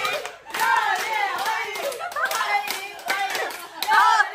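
A small group of people clapping their hands together in welcome, with excited voices calling out "welcome" over the claps.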